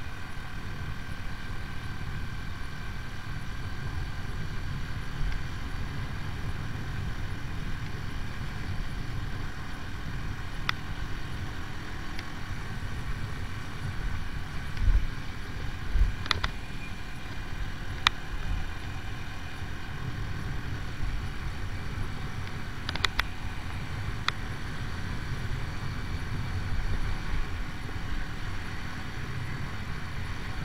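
AJS Tempest Scrambler 125's single-cylinder four-stroke engine running at a steady road speed, heard from on the bike with wind rushing past. A few sharp clicks and a couple of low thumps come through midway.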